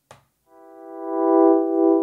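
Electric piano chord from MPC Beats' Electric-Rhodes program, triggered from an Akai MPK Mini Play MK3 pad in chord mode and held steady. It swells louder over about a second as the program level is turned up on the controller's encoder. A faint click comes just before it.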